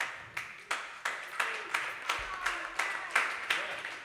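Hands clapping in a steady rhythm, about three claps a second, with a faint voice underneath.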